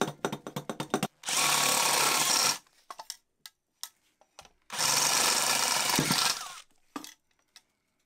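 Cordless drill running in two bursts, about a second and a half and then two seconds long, with a pause between, against a small metal part. A quick run of sharp clicks comes just before the first burst.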